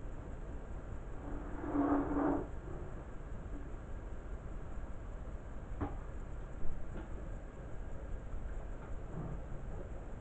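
Beko front-loading washing machine with its drum at rest between stages: a short hum with a rushing sound about a second in, lasting just over a second, then a few sharp clicks about six and seven seconds in, over a steady low rumble.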